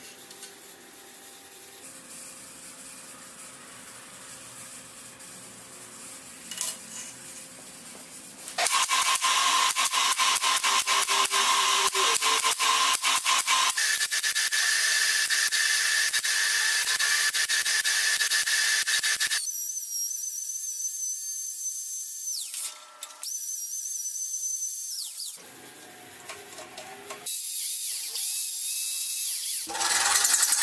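Small steel parts handled quietly on a steel table, then a MIG welder crackling steadily for about ten seconds. After it, a power tool whines in two short runs, each winding down, and starts up again near the end.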